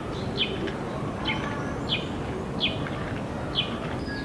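A bird chirping repeatedly: about five short, falling notes, one every half second to a second, over a steady outdoor background hiss.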